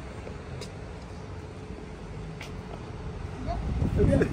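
Steady low rumble of a motor vehicle running nearby, with a faint steady hum.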